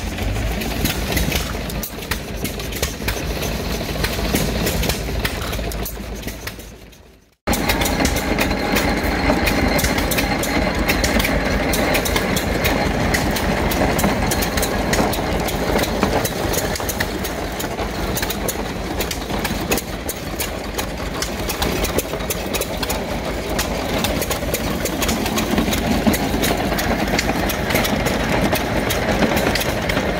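Antique hit-and-miss gas engine running with a quick, steady mechanical beat. About seven seconds in, the sound fades to a moment of silence, then comes back as a belt-driven corn sheller working cobs, its clatter over the running engine.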